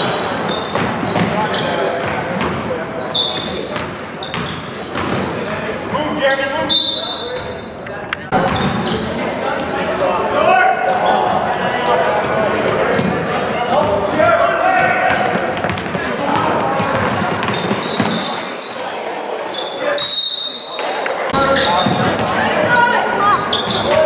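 Live basketball game in a school gym: the ball bouncing on the hardwood floor, sneakers squeaking, and players' and spectators' voices, with the echo of a large hall.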